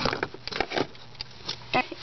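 Handling noise: a few light clicks and knocks as small doll-house items and the camera are handled close to the microphone.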